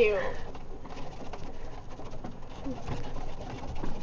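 Golf cart driving over grass while turning: a low, steady rumble with faint rattles.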